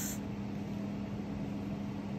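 Steady low hum with a faint even hiss: room tone in a pause between speech.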